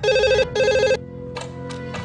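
Telephone ringing with an electronic warble: two short rings, each about half a second, in the first second. It then stops and the call is answered.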